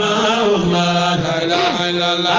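Voices chanting a Sufi devotional qasida in long, held melodic lines that glide between notes.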